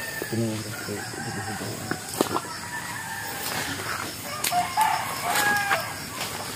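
A rooster crowing once, about four and a half seconds in: a held, pitched call that drops at the end.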